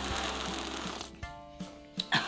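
Hot cocoa being slurped from a mug: a run of short, irregular sipping sounds as the end of a music jingle fades out.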